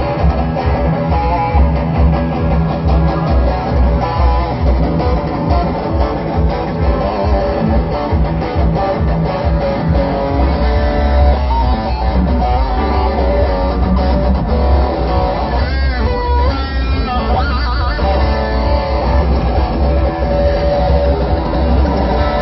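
Electric guitar played through a Maxon SM9 Super Metal distortion pedal running at 18 volts, giving a classic metal sound. It plays a fast chugging rhythm on the low strings for the first half, then held notes and a wavering, bent lead phrase past the middle.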